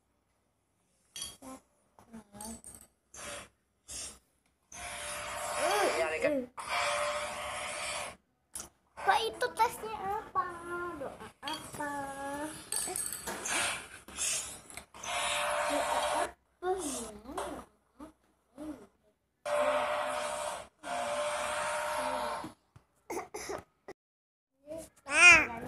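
A small child's voice in short, pitched vocal sounds that slide up and down, with several longer hissy stretches in between.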